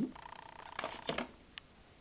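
A few light clicks and taps of plastic model locomotive shells being handled on the layout, with a faint steady high hum through the first half.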